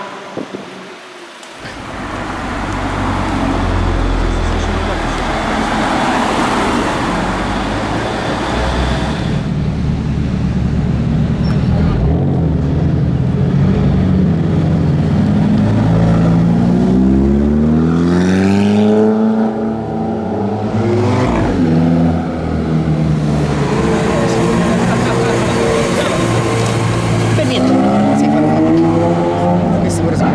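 Sports car engines accelerating past. The engine note climbs in pitch in rising sweeps about halfway through and again near the end, over steady engine and traffic noise.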